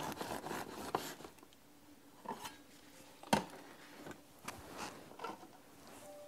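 Serrated bread knife sawing slowly through a loaf of homemade bread in a plastic slicing guide: a faint, soft rasping, with a few light clicks, the sharpest a little past halfway.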